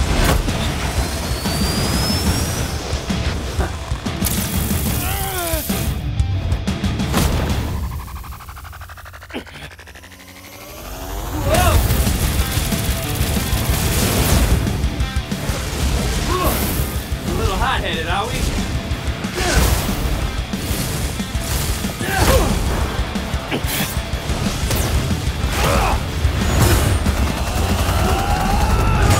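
Battle music under a dense mix of fight sound effects: booms, crashes and hits, with voice-like efforts between them. There is a quieter stretch about eight to eleven seconds in, then a sudden loud return and a run of sharp hits.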